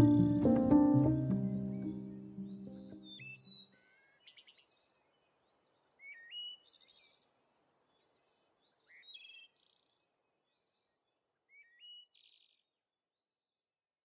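Background music with sustained notes fading out over the first few seconds, followed by a few scattered bird chirps, short rising and hooked notes spaced a few seconds apart.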